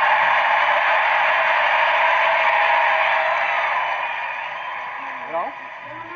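Large arena crowd cheering loudly and steadily, dying down over the last couple of seconds.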